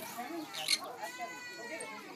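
Voices in the background, with a short, sharp chirp about two-thirds of a second in and then a held, even-pitched call through the second half.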